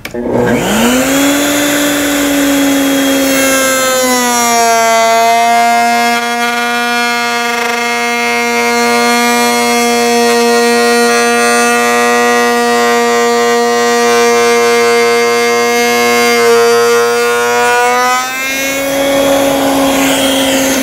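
Table-mounted router turning a large 45-degree lock miter bit. Its motor starts and whines up to speed, drops a little in pitch as the board is fed through the cut from about four seconds in, and rises back to full speed near the end as the cut finishes.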